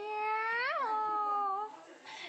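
A baby's long, high-pitched wail held on one note, jumping briefly up in pitch and back partway through, then dying away near the end.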